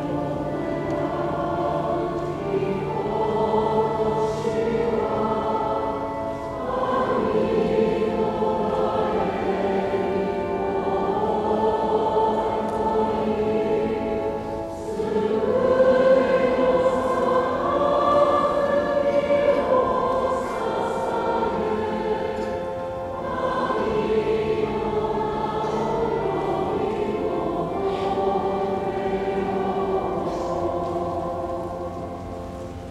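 Choir singing a sacred choral piece in slow, sustained phrases of several seconds each, over a held low note in places.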